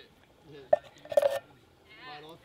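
A metal spatula and a tin can knocking against a Weber barbecue casserole dish: one sharp click, then a short, slightly ringing metallic clatter a moment later.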